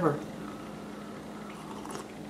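A man's voice ends right at the start, leaving a steady low hum of kitchen room tone. A faint sip of hot coffee from a ceramic mug comes near the end.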